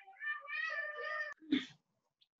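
A high-pitched, drawn-out cry in the background, lasting about a second, then a short sound just after.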